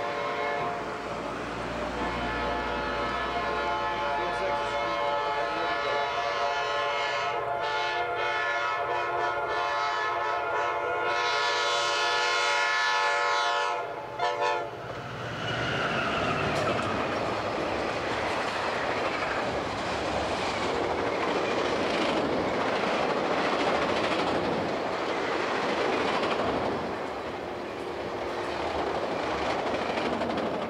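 Amtrak diesel passenger train sounding its horn in one long blast of about thirteen seconds as it approaches, which cuts off suddenly. The locomotive and a long string of mail and passenger cars then rush past at speed, wheels clattering over the rails in a steady roar.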